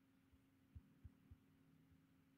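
Near silence: a faint steady hum, with three soft low thumps in quick succession about a second in.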